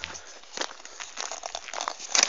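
Footsteps crunching softly and irregularly on a gravel dirt track, with rustle from the handheld phone.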